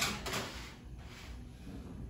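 A metal baking sheet and oven rack sliding into an oven: a brief scrape at the start that fades away.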